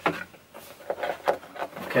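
Small cardboard box being opened and its packaging handled by hand: flaps and inserts rubbing and knocking in a run of short, irregular taps and scrapes.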